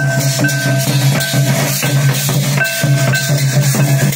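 Live Santali folk percussion: a large kettle drum and stick-beaten barrel drums played in a fast, driving rhythm, with large brass cymbals clashing over them. A low ringing tone recurs in stretches of about a second under the strokes.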